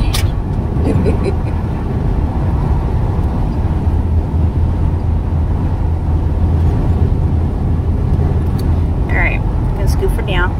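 Steady road and engine noise inside a moving vehicle's cabin at highway speed, a constant low drone with a broad rush of tyre and wind noise above it. A brief faint voice comes in near the end.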